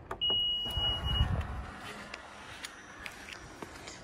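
Power tailgate of a 2017 Honda Pilot set closing by its close button: a single steady high warning beep about a second long, over the low hum of the tailgate motor that fades out after under two seconds.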